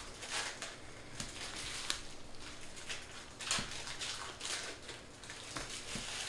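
A stack of glossy chrome trading cards being flipped through by hand: irregular quick slides and clicks of card against card.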